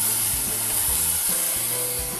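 Ground lamb sizzling in a hot skillet: a steady hiss that sets in suddenly as the meat drops into the pan.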